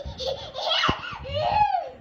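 A little girl laughing in about three bursts, with a brief knock about a second in.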